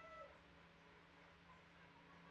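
Near silence: faint room tone with a low steady hum. A faint pitched call glides down and fades out just after the start.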